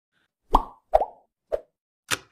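Three short pop sound effects about half a second apart, the third softer than the first two, in an animated intro.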